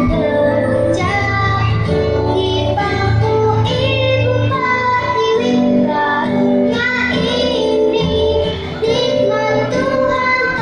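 A young girl singing a song with her own acoustic guitar accompaniment, sung into a microphone.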